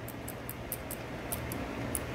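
Faint, light metallic clicks, several a second and unevenly spaced, as a small wrench works the pinion-shaft lock bolt inside an open rear differential, over a low steady hum.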